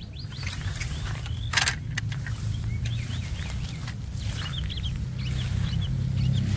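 Small birds chirping over and over, with a steady low hum underneath and a brief rustle about a second and a half in.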